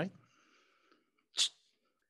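A single short, sharp breath noise from a man at a microphone, about one and a half seconds in.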